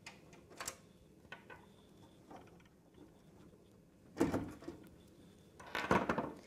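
Faint clicks from thumbscrews being turned by hand out of the back of a metal PC case. About four seconds in comes a louder, short scrape of metal handling.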